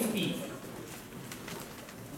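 Outdoor racecourse ambience: a voice over the public-address system trails off and echoes in the first half second, then a low background hum with a few faint clicks.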